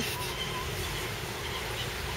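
Steady outdoor background noise, with two faint short chirps in the first second.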